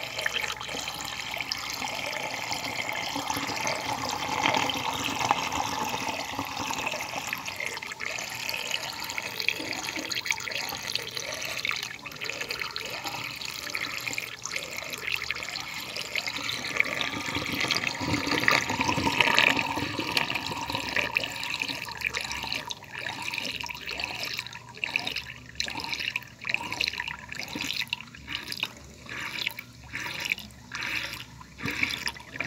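A water whirlpool swirling and draining down a hole in a tank: a steady rush of moving water that, in the last several seconds, breaks up into choppy gurgles and splashes.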